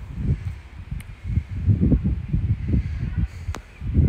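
Wind buffeting a phone microphone in uneven low gusts, with a faint click about a second in and another a little past three seconds.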